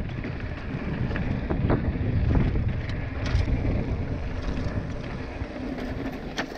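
Wind rumbling on the microphone of a mountain bike moving at speed, with the tyres rolling over loose rock and gravel and scattered clicks and rattles from the bike on the rough track.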